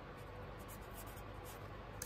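Felt-tip calligraphy marker writing on paper: a series of faint, short scratchy strokes as a word is written by hand.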